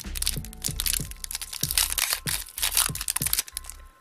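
A foil Pokémon TCG booster pack wrapper crinkling and crackling as it is torn open by hand. Background music with a steady low beat plays underneath.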